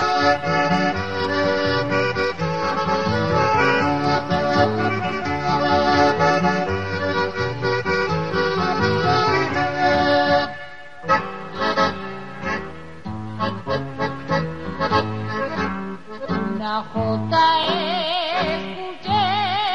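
Instrumental introduction to a Navarrese jota led by accordion. Sustained chords run for about ten seconds, then after a brief dip a choppier, rhythmic passage follows. A singing voice with wide vibrato comes in near the end.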